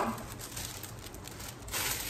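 Sheet of tissue paper rustling and crinkling as it is handled and opened out by hand, louder near the end.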